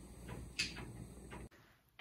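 Faint room hum with a few soft rustles and light knocks as hands work a knitted wool sweater. The sound cuts off to dead silence about one and a half seconds in.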